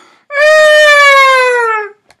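A man's long, high-pitched wail, held about a second and a half and slowly falling in pitch: exaggerated mock crying.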